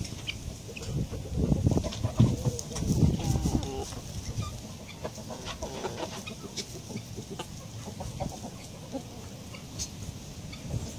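Chickens clucking in a barnyard, in short calls that come mostly in the first few seconds and again around the middle.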